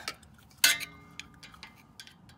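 A steel screwdriver clinking against the rear disc brake caliper as it is worked in to push a pin out: one sharp metallic clink about two-thirds of a second in that rings on briefly, then a few light ticks.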